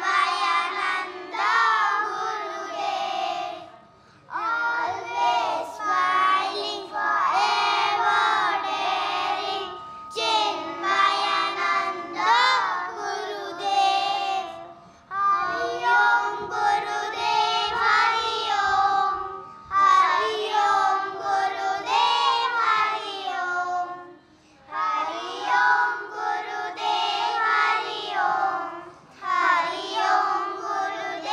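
A group of children singing a Hindu devotional bhajan together, line by line, with short breaks between the sung phrases.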